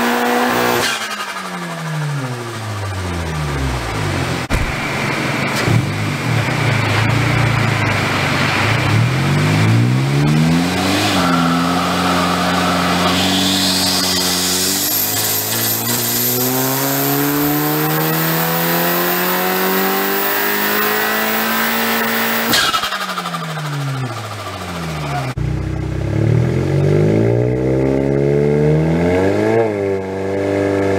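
A VW Golf R MK7's turbocharged 2.0-litre four-cylinder engine, with a hybrid turbo, catless downpipe and resonator delete, being run through repeated revving pulls on a hub dyno. The revs fall at the start, then climb over long stretches. About three-quarters through there is a short sharp burst as the revs drop, and the revs climb again near the end.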